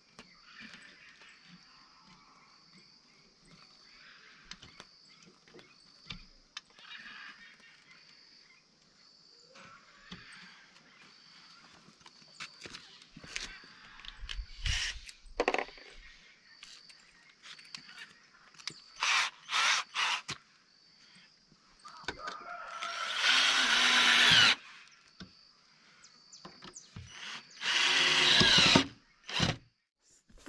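Power drill run in short bursts, then two longer runs of about two seconds each near the end, drilling into the house wall for wall plugs and driving in screws.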